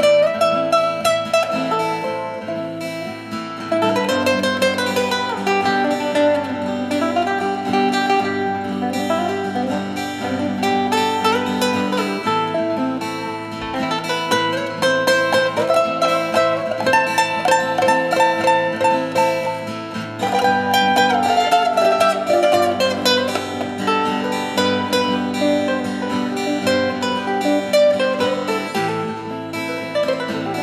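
Classical nylon-string guitar playing an instrumental solo: quick plucked melody lines over chords, in phrases that pick up again about four seconds in and again about twenty seconds in.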